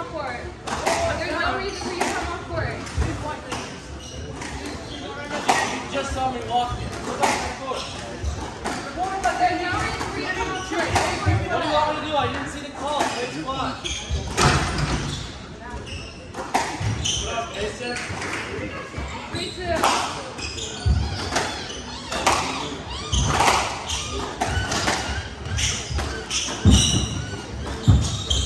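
Squash balls striking court walls and floor, sharp knocks scattered irregularly, over steady chatter of spectators' voices in a large hall.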